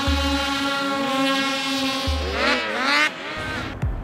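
Several two-stroke race snowmobile engines revving together at a snowcross start, a held, high, many-toned drone that swells and falls in pitch about two and a half seconds in, then drops away.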